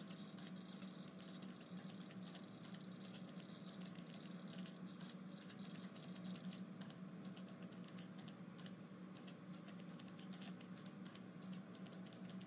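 Faint computer keyboard typing: irregular light key clicks over a low steady hum, a background office ambience.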